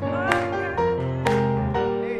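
Live jazz band playing a slow tune: chords on piano and guitar over upright bass and drums, changing about once a second. A sharp hit lands on each beat, about once a second.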